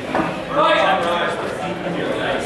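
Indistinct voices of people talking, louder from about half a second in.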